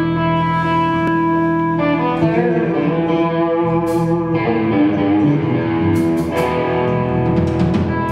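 Rock music: ringing electric guitar chords with drums, and cymbal hits in the second half.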